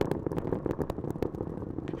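Space Launch System rocket in powered ascent, its four RS-25 core stage engines and two solid rocket boosters firing, heard as a steady rumble thick with irregular crackle.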